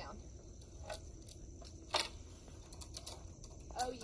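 A few sharp clicks and knocks, the loudest about two seconds in, from a steel chain and bungee hardware and feet on a stepladder as someone climbs down it in a bungee harness.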